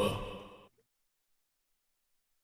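A man's voice tailing off and fading out within the first second, then dead digital silence.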